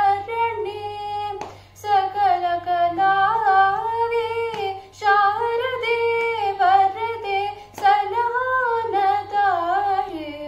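Young female voice singing Carnatic music in raga Kalyani, in long held phrases whose pitch slides and shakes in gamaka ornaments. Short breaks for breath come roughly every three seconds.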